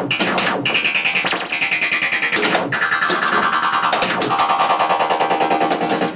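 Williams Space Shuttle pinball machine playing its synthesized electronic game music and sound effects during play, with a few sharp clicks through it.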